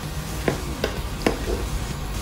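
Metal ladle stirring chicken pieces in broth in a pan, clinking against the pan three times.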